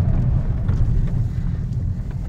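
Cabin noise of a moving Ford Ka+ 1.2 (85 hp): a steady low engine and road rumble, easing off slightly toward the end.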